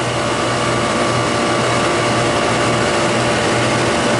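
Refrigeration condensing unit running, with its newly replaced compressor and condenser fan, just after charging with R407F: a steady mechanical hum with a faint steady high tone.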